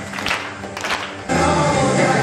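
A group of children singing together with clapping; a little over a second in, louder music with singing comes in abruptly.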